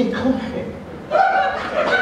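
Voices speaking and chuckling, in two stretches with a short lull between.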